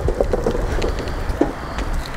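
Low outdoor rumble on a handheld camera's microphone, with a few light, irregular clicks.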